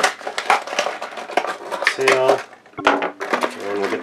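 Cardboard and plastic toy packaging being handled and pulled apart: a busy run of crinkles, rustles and small sharp clicks.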